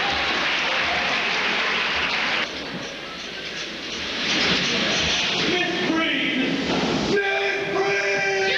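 Audience applause that breaks off suddenly about two and a half seconds in. After a quieter gap, music with long held notes starts and fills the second half.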